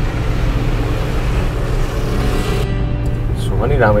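Taxi running, a steady low engine and road rumble, under background music that stops sharply about two-thirds of the way in. A brief spoken word comes right at the end.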